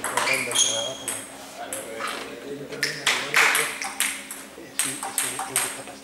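Table tennis ball being hit back and forth: a string of sharp hollow clicks off the paddles and the table at uneven intervals, some with a short high ring.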